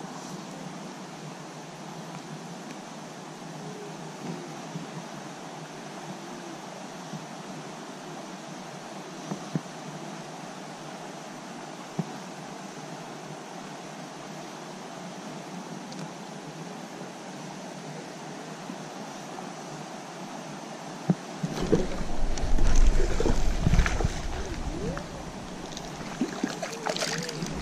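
Steady rush of a mountain creek. Near the end a sudden, louder rumbling stretch with splashing comes as a hooked small trout thrashes at the surface.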